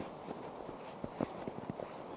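Footsteps in snow: a quick, irregular series of short steps from a person walking while carrying a large snowball.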